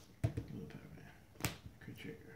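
Trading cards being handled on a playmat: two sharp clicks about a second apart as cards are snapped down or flicked, with some low muttering between them.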